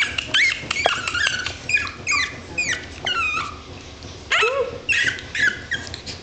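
Young puppies whimpering and yelping in many short, high-pitched cries that bend up and down in pitch, with a louder run of cries about four and a half seconds in.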